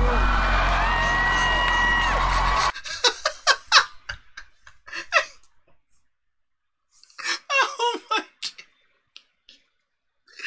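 Live a cappella concert audio with a very deep sustained bass note under crowd noise, cut off abruptly when playback is paused about three seconds in. Then a man laughing in short bursts, twice, with a pause between.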